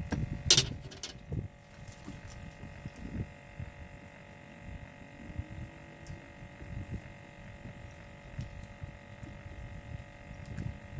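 Irregular low knocks and rustling handling noise as a crappie is unhooked by hand, with one sharp click about half a second in. A faint steady hum runs underneath.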